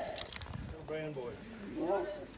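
Faint, distant speech from another person: two short phrases, one about a second in and one near the end.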